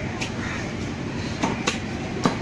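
Large fish-cutting knife chopping through a chunk of fish and striking the cutting block, a few sharp chops with two close together in the second half, over steady background noise.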